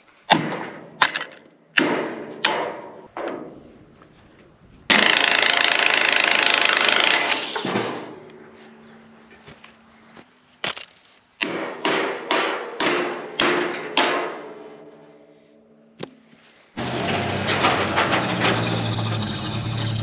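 Cordless drill running in two steady bursts, about five seconds in and again near the end, as the old tail-light fittings are taken off a steel trailer frame. Between them come a series of sharp metallic knocks with a short ring.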